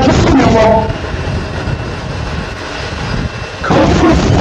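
Jet engines of a taxiing twin-engine airliner, a steady rushing drone. A voice is heard briefly at the start and again near the end.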